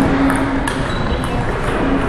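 Busy sports-hall ambience with scattered sharp clicks of table tennis balls striking bats and tables, and a low steady hum near the start and end.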